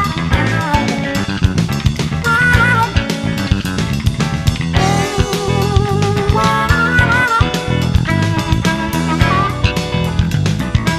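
Blues band playing an instrumental break: an electric guitar leads with bent, wavering notes over bass guitar and drums.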